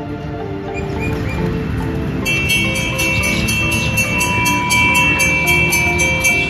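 Background music, joined about two seconds in by a hanging brass temple bell rung rapidly, about four to five strikes a second, its high ringing tones sustained between strikes.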